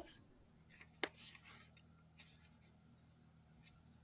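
Near silence of an open call line, with one short click about a second in and a little faint rustling around it.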